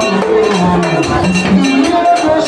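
Vodou ceremonial music: a struck metal bell and drums keeping a steady beat under group singing.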